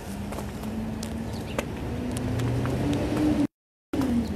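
A vehicle engine running nearby, rising slowly in pitch and growing louder, with scattered footstep clicks. The audio cuts out completely for a moment near the end.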